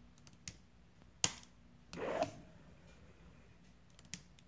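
AASD-15A AC servo drive giving a faint, steady whine, the trilling noise it makes when its ground connection is missing. The lower tone of the whine stops a little after two seconds in. A sharp click comes about a second in, and a brief rustle about two seconds in.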